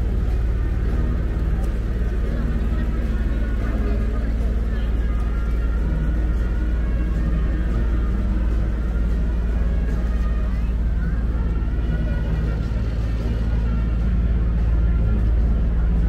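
Outdoor street ambience: a steady low rumble, with people's voices and some sustained, music-like tones over it.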